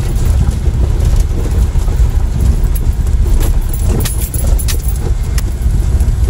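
Vehicle driving over a rough, rocky gravel road, heard from inside the cabin: a steady low rumble of tyres and suspension, with a few sharp rattles and knocks from about three to five and a half seconds in as it jolts over stones.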